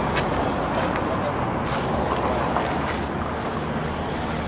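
Street traffic: a steady rumble of passing cars, with faint voices.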